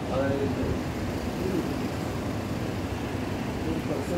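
Steady outdoor urban background noise with a low, even hum, such as air-conditioning units and distant traffic make. A brief voice is heard right at the start.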